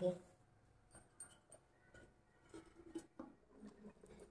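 Near silence: faint room tone with a few soft, short clicks, the loudest about three seconds in.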